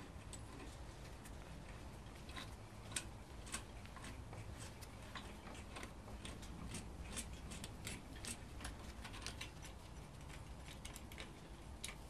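Ratchet wrench and socket clicking in irregular runs as bolts are turned, with a few louder metal taps.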